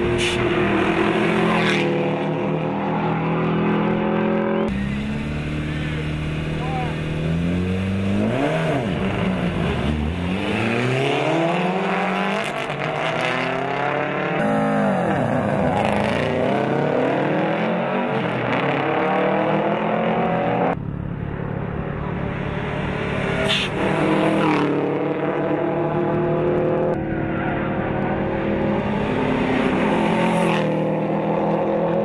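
Rally car engines revving hard and passing by on a tarmac stage, the pitch climbing and dropping through gear changes and sweeping as cars go past. The sound changes abruptly several times between passes.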